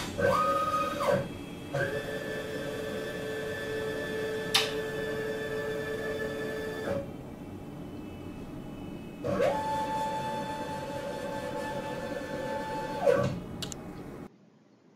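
Electric actuator motors of a quench-test rig running in three spells: a steady machine whine at several pitches that starts and stops sharply, first briefly, then for about five seconds, then for about four seconds near the end. A single sharp click comes about four and a half seconds in.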